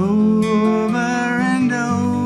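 A man singing a sustained, wavering line over a strummed acoustic guitar; the sung phrase swells in right at the start.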